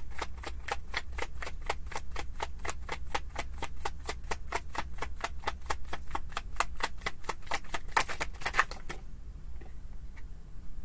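A tarot deck being shuffled by hand, the cards slapping together in a quick, even rhythm of about five or six a second. The shuffling stops about nine seconds in.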